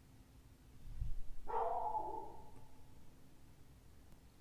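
A low thump about a second in, then a short pitched, whine-like call that starts suddenly and fades out over about a second and a half.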